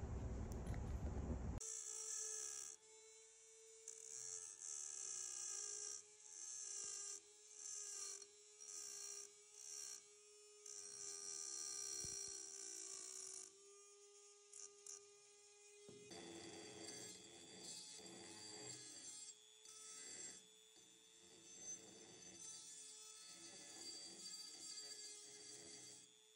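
A small high-speed rotary tool with a pink grinding-stone bit, grinding into porous coral rock. Its motor whines steadily while the bit bites in repeated bursts of gritty hiss, about one to two a second, easing to lighter, steadier grinding for the last third. A coarser scraping fills the first second and a half.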